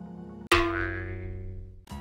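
Soft background music, then about half a second in a sudden bright musical hit that rings and dies away over about a second. It is a transition sound effect marking the change to the next news item.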